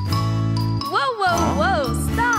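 Cheerful children's-song backing music with a steady bass line. From about a second in, a cartoon character's voice cries "wow, wow" in rising-and-falling exclamations.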